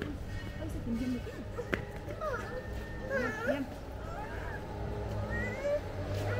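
Street ambience: scattered voices of people nearby, in short curving calls, over a steady low hum.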